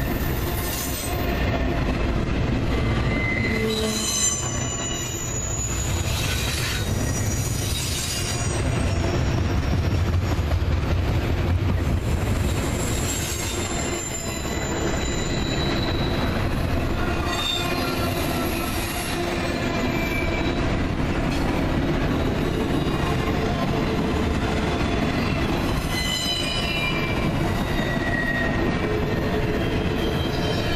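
Double-stack intermodal freight train's well cars rolling past, a steady loud rumble of steel wheels on rail with brief high wheel squeals coming and going every few seconds.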